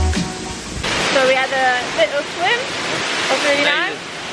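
Background music with a bass beat, cut off about a second in by the steady rush of a waterfall, with voices over the falling water.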